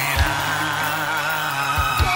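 Dance music playing: a wavering high melody over steady bass notes, with a drum hit shortly after the start and another near the end.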